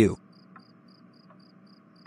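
Crickets chirping steadily, short high chirps about four a second, with a faint steady hum beneath.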